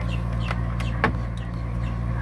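A steady low hum of background machinery, with two light clicks about half a second and a second in, and faint short high chirps.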